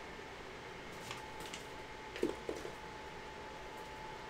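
Faint handling of trading cards, with a few soft rustles and ticks and two short soft taps a little after the midpoint, over a faint steady hum.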